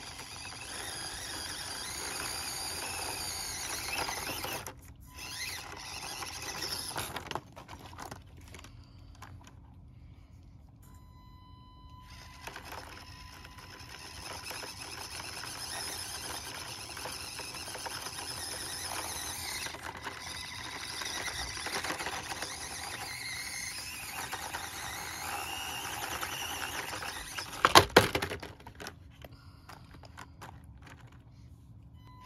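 Axial SCX24 micro RC crawler's small electric motor and gears whining in spurts as it crawls up rock on its stock tires, with a quiet pause of about five seconds in the first half. A sharp, loud clatter comes near the end.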